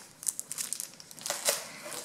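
Thin plastic packaging crinkling in the hands as a clear stamp set is handled and put down, in a few short crackles.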